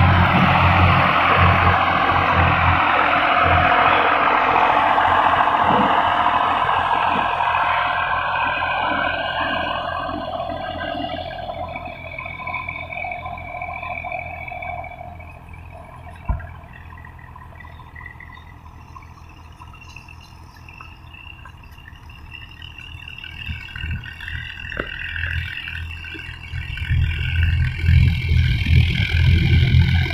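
Farm tractors' diesel engines working under load while pulling land levellers over sand. The engine drone is loud at first as a tractor passes close, fades away over the first half, and swells again near the end as a tractor draws near. There is a single sharp click about halfway through.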